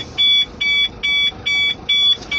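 Howo dump truck's cab warning buzzer beeping steadily with the PTO engaged, a high-pitched beep repeating about two and a half times a second.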